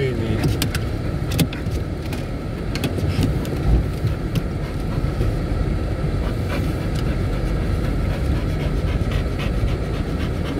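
Steady road and engine noise heard inside a moving car, with tyre noise from a brick-paved road and scattered short clicks and knocks.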